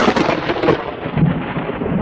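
A loud, steady rushing, rumbling noise, an edited-in outro sound rather than speech; it turns duller about three-quarters of a second in.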